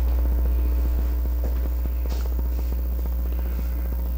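A steady low electrical hum, even throughout.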